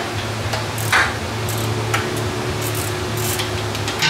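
Hand tools clinking on metal, irregular sharp clinks with one louder strike about a second in, over a steady low hum.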